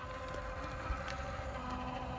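Steady mechanical hum with a low rumble from beneath the rear of a Mercedes-Benz E-Class, with a few faint ticks.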